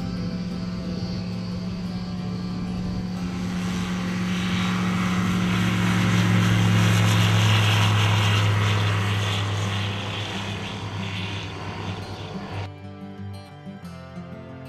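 Aeroprakt A22 light aircraft's propeller engine on its takeoff run, a steady tone that grows louder to a peak about halfway as the plane passes close and lifts off, then eases. It cuts off suddenly near the end, where music takes over.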